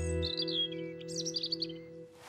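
A held musical chord slowly fading away, with birds chirping over it in two short flurries, the first just after the start and the second about a second in.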